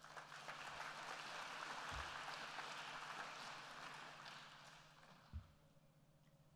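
Audience applauding, faint, starting at once and dying away about five seconds in, with a soft low thump near the end.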